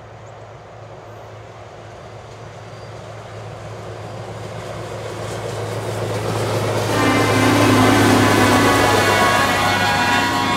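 A self-propelled railroad maintenance-of-way machine approaching on the track, its diesel engine humming steadily and growing louder as it nears. From about seven seconds in, a loud steady high tone with several pitches joins in as the machine passes close.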